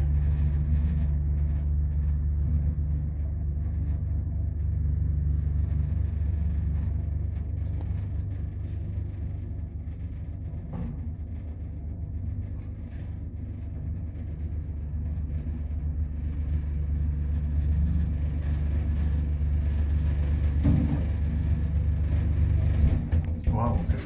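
Otis elevator car travelling upward, heard from inside the cab: a steady low rumble and hum that dies away at the very end as the car stops.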